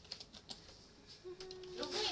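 Faint typing on a computer keyboard, a scattered run of light key clicks.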